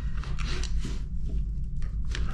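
A 6 mm Allen key being turned by hand to tighten a seat post clamp bolt: faint scattered clicks and rubbing of the tool and the clamp hardware, over a steady low hum.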